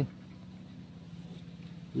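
Steady low motor hum at one unchanging pitch.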